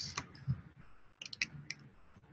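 About half a dozen light, quick clicks scattered through a quiet pause, from a computer mouse being clicked.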